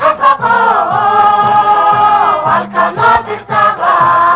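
Music: a group of voices singing a song together, holding and sliding between notes over a backing of short repeated low notes.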